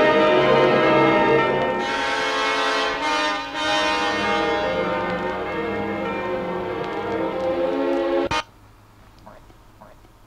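Loud orchestral classical music, with brass, played from a worn mono vinyl record by a turntable's ceramic cartridge through a homemade high-impedance preamp. It cuts off suddenly with a click about eight seconds in, leaving only faint background noise.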